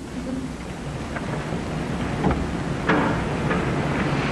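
Audience applause with some crowd noise, building up over a few seconds.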